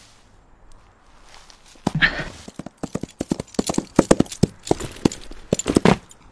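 Horse hoofbeats, a fast, uneven run of sharp clip-clops that starts about two seconds in after a quiet opening.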